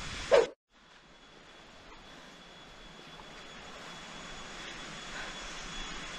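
Steady rushing outdoor background noise that fades in after a brief cut and grows louder over a few seconds, with a faint steady high tone running through it.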